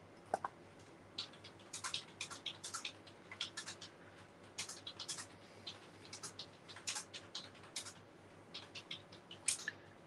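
Two quick snips of scissors cutting cord, then faint, scratchy rustling in short irregular bursts as fingers pull and untwist the cord's strands apart over paper.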